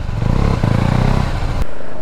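Motorcycle engine running, heard from the rider's seat with a noisy rush over it; it cuts off suddenly about one and a half seconds in.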